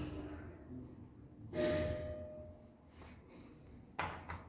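IFMA traction elevator car arriving and stopping at a landing: a sudden noise about one and a half seconds in, with a thin steady tone that holds for about a second, and a sharp click at the very end.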